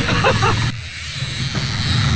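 Boat's outboard motor running with a steady low hum, a man's laugh trailing off at the start. The sound drops suddenly for about a second just before the middle, then the engine hum returns.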